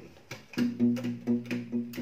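Steel-string acoustic guitar, tuned down low, fingerpicked in a steady rhythm from about half a second in. A pulsing bass line runs at about four notes a second, with higher notes picked on top.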